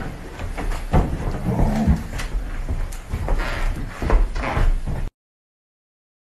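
Cell phone recording played back at reduced speed: a run of low thumps and knocks with a brief deep, drawn-out voice-like sound, cutting off abruptly about five seconds in.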